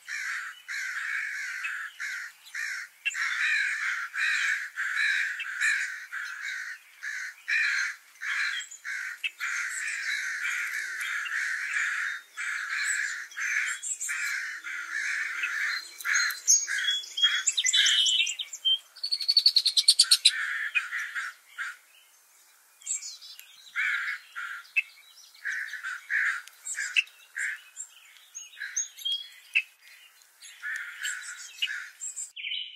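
Wild birds calling: a long run of harsh, raspy calls, then higher chirps and a fast trill about two-thirds of the way through, with scattered calls after a short pause.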